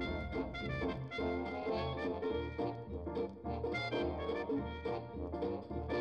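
Background music: upbeat jazzy swing tune with brass and a steady bass beat.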